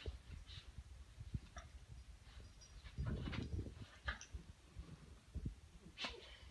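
Two dogs playing tug of war with a toy, making faint low growls, with a louder spell of growling about halfway through.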